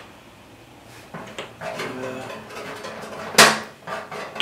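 Handling noises from mixing acrylic paint: light knocks and rubbing of painting tools and paint pots, beginning about a second in. One sharp, loud knock comes about three and a half seconds in.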